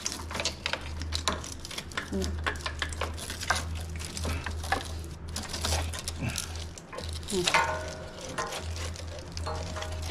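Wiring harness and braided cable loom being handled and pushed up inside a motorcycle frame: irregular rustling, scraping and small clicks of wires and plastic connectors, over a steady low hum.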